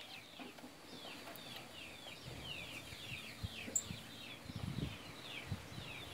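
Birds chirping faintly outdoors: a steady run of short falling chirps, several a second, with a few soft low thumps around the middle.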